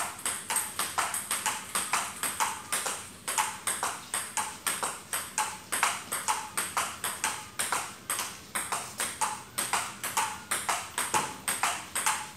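Table tennis ball in a steady forehand practice rally: sharp clicks of the ball on the paddles and the table, alternating about four or five a second without a break.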